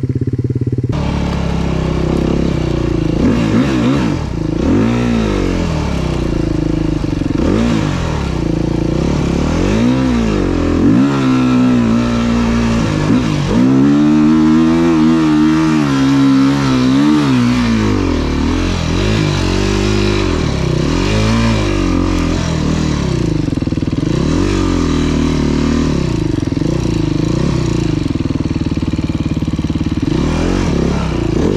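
Enduro motorcycle engine under load on a steep sandy climb, its revs rising and falling again and again with the throttle, with a longer sustained high-rev pull around the middle.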